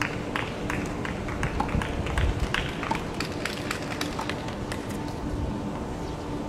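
Quick, irregular footsteps of a tennis player's shoes on a hard court, tailing off about four and a half seconds in, over a faint steady hum.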